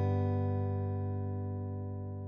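An acoustic guitar chord is left to ring after a strum, its notes sustaining and slowly fading.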